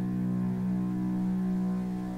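Background film score holding a sustained low drone chord, steady with no beat.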